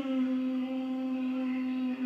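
A man's voice holding one long, steady note, hummed or drawn out on a vowel. It starts with a short upward slide and then holds the same pitch for about three seconds without words.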